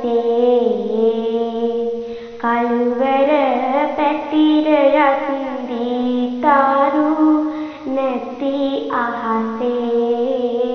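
A girl singing Sinhala kavi (traditional sung verse) solo, holding long notes with wavering ornaments. She starts new phrases about two and a half, six and a half, and nine seconds in.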